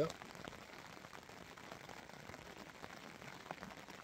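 Rain pattering faintly and steadily on the fabric of a bivvy tent, heard from inside, with scattered small drop ticks.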